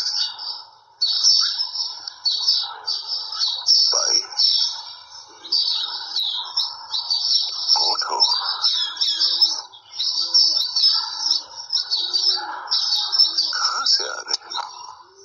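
A flock of small birds chirping and chattering all at once, a dense, unbroken twittering with lower calls mixed in.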